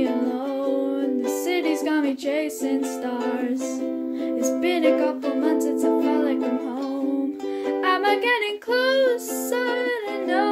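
A ukulele strummed steadily in chords, with a young girl's singing voice over it at intervals, in a small room.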